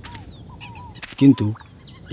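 Small bird chirps over a steady high-pitched insect drone, with a brief loud voice-like call about a second in.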